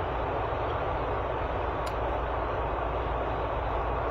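Steady road and engine noise heard from inside a pickup truck's cab while cruising at highway speed.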